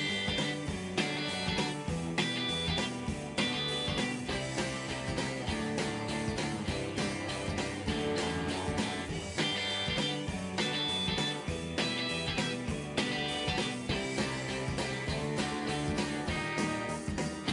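A multitrack rock song playing back: drums, bass, electric and acoustic guitars, shaker and tambourine. After groove matching, all the instruments play locked in time with the drums, with a human feel rather than a robotic one.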